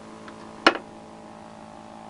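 Pulse motor generator running with a steady hum, with a single sharp click about two-thirds of a second in.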